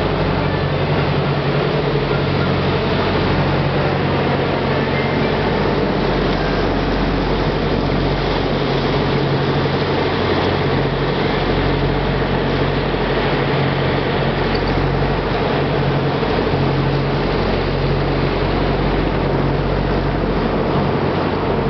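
A river cruise boat's engine running steadily while under way, a constant low hum under a steady rushing noise of water and air.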